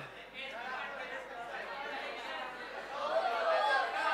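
Low, indistinct voices talking, growing a little louder near the end.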